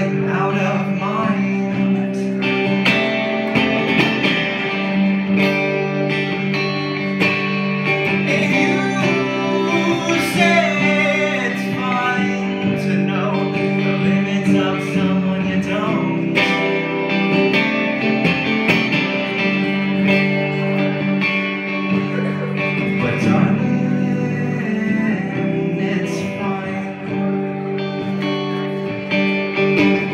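Solo live performance: a man singing while strumming an electric guitar, both at a steady level.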